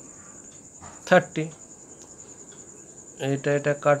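Crickets trilling steadily at a high pitch in the background, with two short bursts of speech over them, one about a second in and one near the end.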